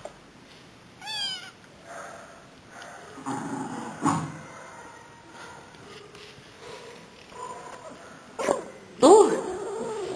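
Domestic cat vocalising while it eats: a short, quickly warbling call about a second in, and louder calls near the end.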